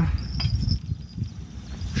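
Small bite-alarm bell on a fishing rod tip tinkling faintly as the rod is handled and set into the rod holder, with one short knock about half a second in.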